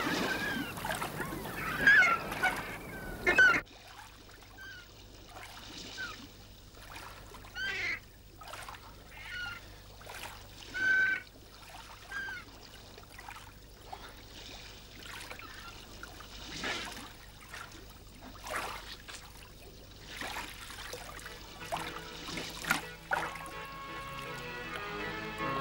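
Gulls calling over the sea, short cries repeating every second or two. Splashing waves can be heard until about three and a half seconds in, where they cut off suddenly; the cries carry on over a quieter background.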